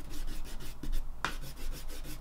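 Eraser rubbing lightly back and forth over pencil lines on watercolour paper, a run of quick, scratchy strokes, knocking back the sketch before painting.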